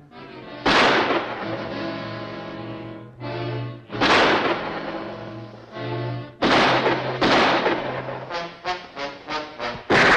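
Dramatic orchestral film score with pistol shots in a gunfight: several sharp shots a second or more apart, the loudest about a second in and at the very end, with a quick run of short staccato stabs in the music near the end.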